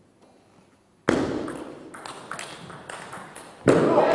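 Table tennis rally: the celluloid ball clicking sharply off bats and table in quick succession, after about a second of dead silence. Loud voices cut in near the end.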